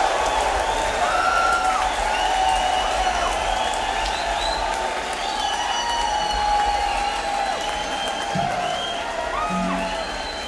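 Rock concert crowd applauding and cheering with many scattered whistles at the end of a song. A low hum from the stage runs underneath, and a couple of short low instrument notes sound near the end.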